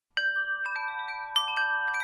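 Wind chimes ringing, starting out of silence just after the start: bright metal tones struck at irregular moments, each one ringing on and overlapping the next.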